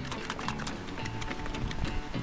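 Cans of beef stockpot shaken by hand, the contents knocking inside in quick repeated thuds, over background music.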